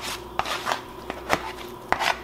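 A fork scraping and tapping on a plate as shredded cooked meat is pushed off it into a slow cooker: a handful of light clicks with soft scrapes between them.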